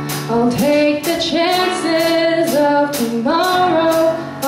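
A young female voice singing a song in held notes with pitch glides, over a regularly strummed acoustic guitar.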